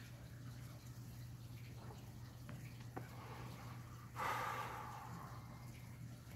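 A person exhales a drag of cigarette smoke about four seconds in: a faint breathy rush that fades over a second or so. A low steady hum runs underneath.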